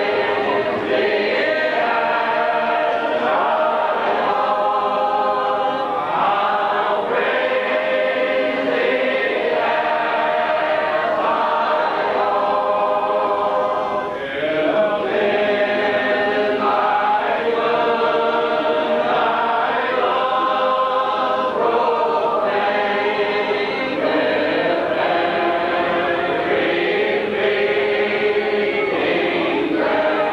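A church congregation singing a hymn together, unaccompanied, in slow held notes.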